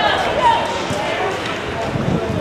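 People's voices calling out, not close enough for clear words, with a few short dull thumps.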